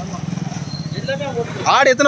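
A goat bleats loudly near the end, a wavering call. Under it runs a steady low engine hum.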